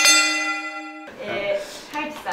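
Bell sound effect: a quick run of bell strikes ringing together, fading and then cut off suddenly about a second in.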